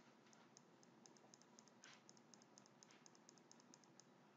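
Faint, rapid clicking of a computer mouse or keyboard, about six clicks a second, over near silence. The clicks are the input working the spreadsheet's sideways scroll.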